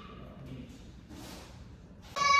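Quiet room tone of a large hall, with a faint brief rustle a little past a second in.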